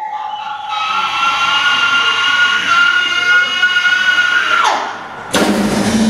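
Female blues singer holding a long, high unaccompanied note that slides steeply down near the end, and then the full band of drums, electric guitars, bass and keyboard comes back in together just before the end.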